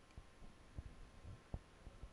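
Near silence: room tone with a few faint low thumps.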